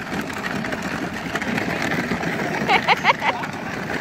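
Battery-powered ride-on toy jeep driving over gravel, its plastic wheels crunching steadily on the stones.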